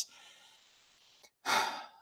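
A man sighs: a faint breath, then a louder breathy exhale about one and a half seconds in.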